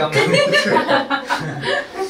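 Chuckling laughter mixed with a few spoken words.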